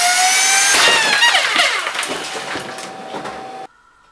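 3D-printed electric supercharger, its impeller driven by a high-speed electric motor, whining at speed. About a second in the whine bends and falls and breaks into a crackling, clattering racket as the impeller and its housing, printed from the same material, melt together and the unit comes apart. The noise dies down under a steady motor tone and cuts off suddenly near the end.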